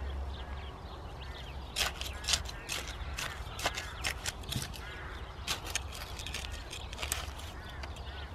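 Metal hand trowel digging, scraping and clicking in heavy, stony soil as broad bean plants are set in, a run of short sharp scrapes and clicks. Birds call now and then in the background.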